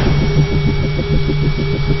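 Sound effect for an animated logo intro: a steady low drone that pulses evenly, about seven times a second.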